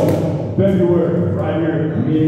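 A man's voice shouting loudly without clear words, with a thud right at the start.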